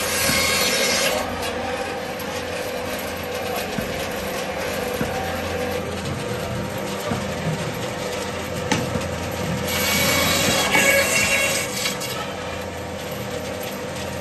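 Electric meat-and-bone bandsaw running with a steady motor hum, its blade rasping as it cuts through beef and bone. The cutting noise is louder near the start and again from about ten to twelve seconds in.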